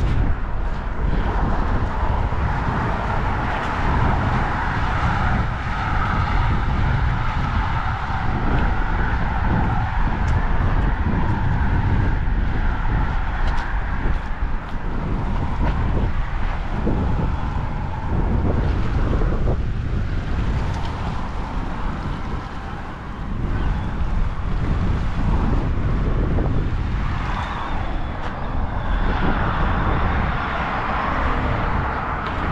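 Wind buffeting the microphone: a steady low rumble with an even hiss above it.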